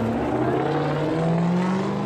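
Loud engine of a big motor vehicle running, with its pitch stepping up about halfway through as it revs.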